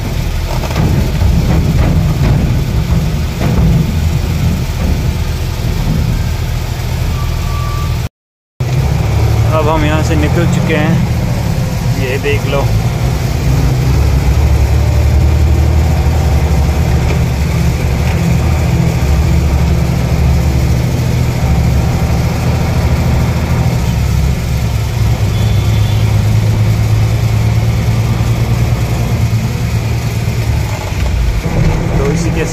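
Goods truck's diesel engine running, heard from inside the cab: a steady low drone. A brief dropout comes about eight seconds in, followed by a few seconds of a wavering pitched sound.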